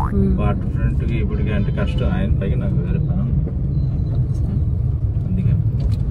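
Steady low rumble of a car on the move, heard from inside the cabin, with talking over it in the first few seconds.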